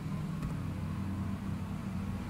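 Steady low background hum with one faint keyboard keystroke click about half a second in.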